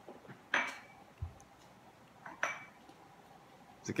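Two short clinks of a coffee mug, about two seconds apart, with a soft low thump between them.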